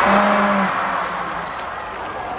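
Concert crowd cheering and screaming, swelling at the start and slowly dying away.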